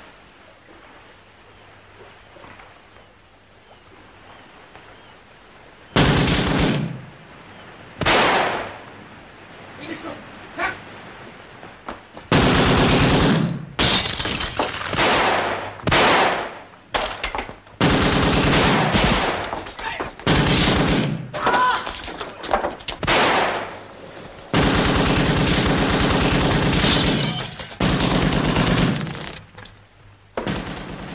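Machine-gun fire in repeated rattling bursts, starting about six seconds in and coming in quick succession, the longest burst near the end, over a low steady hum.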